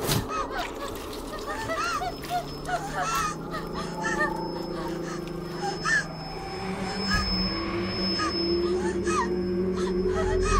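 Horror film sound design: many short, squeaky chirping calls scattered over a sustained low drone that thickens about four seconds in and swells, rising slightly in pitch, over the last few seconds.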